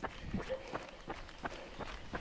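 Faint footsteps of a trail runner jogging, about two to three steps a second.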